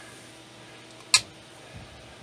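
A single sharp tap about a second in, a hand knocking on the finned metal case of a power inverter, over a faint steady hum.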